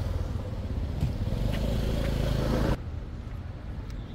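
Street traffic: a steady low engine rumble with road hiss from passing vehicles, which drops away suddenly about three-quarters of the way through, leaving a quieter rumble.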